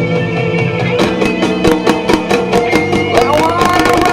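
Live rock band playing a song, with drums keeping a steady beat from about a second in under sustained pitched instruments.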